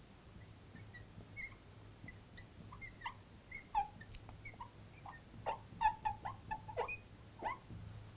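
Felt-tip marker squeaking on a glass lightboard while words are written, a run of short high squeaks that comes thicker in the second half.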